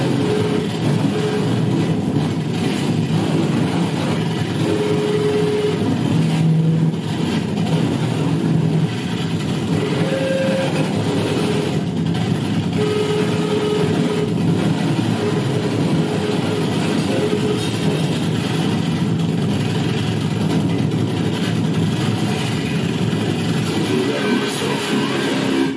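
Harsh noise music from amplified tabletop electronics: a loud, dense, unbroken wall of distorted noise, with short held tones surfacing in it now and then.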